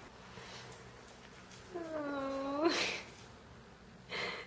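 A single drawn-out vocal call about a second long, held on one pitch and lifting at the end, followed by a short breathy burst.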